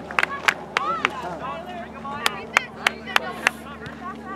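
Distant voices of players and spectators calling across an outdoor soccer field, with a string of sharp clicks, a run of them about three a second in the second half.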